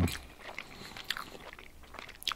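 Quiet eating sounds: chewing, with a few light clicks and scrapes of a metal fork on a plate as it gathers spätzle.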